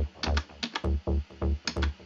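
Techno loop at 130 BPM: a kick drum on every beat under short, distorted FM bass notes from Ableton Operator, with clicky attacks between the kicks.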